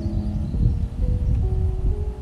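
Music with held chords that change about every half second, over a steady low rumble.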